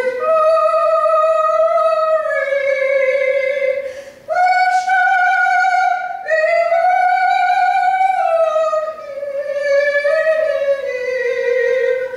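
A woman singing a slow gospel song solo, holding long notes with vibrato, with two short pauses for breath, about four and six seconds in.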